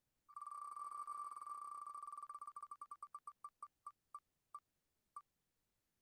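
Wheel of Names web spinner's tick sound through the computer: rapid short electronic beep-ticks that start about a third of a second in, run together at first, then slow down steadily as the wheel decelerates, the last ones more than half a second apart.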